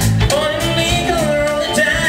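Live smooth jazz band playing: a male lead vocal over drum kit, bass guitar, keyboards and electric guitar.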